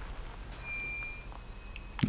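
Quiet room tone with a faint, short high-pitched beep about half a second in.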